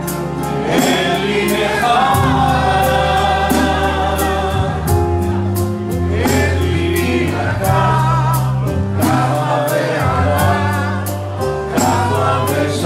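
A man and a woman singing a Greek-style song together into microphones, accompanied by accordion over sustained bass notes and a steady ticking beat.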